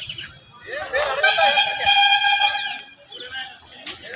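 A vehicle horn sounding one long, steady note of about a second and a half, with people's voices around it.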